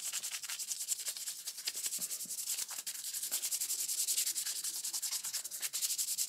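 An alcohol prep pad rubbed rapidly back and forth with gloved fingers, close to the microphone: a fast, even run of scratchy strokes, like swabbing skin clean before a procedure.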